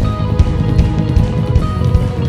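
Live worship band playing an instrumental passage: electric guitar and bass guitar over a steady beat, with no vocals.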